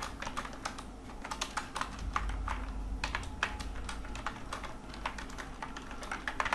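Typing on a computer keyboard: a run of unevenly spaced keystroke clicks as text is entered into a form field, over a steady low hum.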